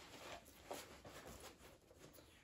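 Faint rustling and soft scuffs of a large backpack being handled.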